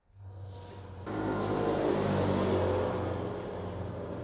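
A motor vehicle's engine running as it passes, a steady low hum that swells about a second in and eases off near the end.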